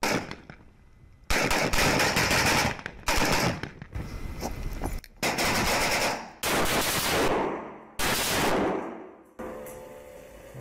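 Kalashnikov-pattern assault rifles firing rapid automatic bursts, in about five runs of fire that each start abruptly, after a quieter first second.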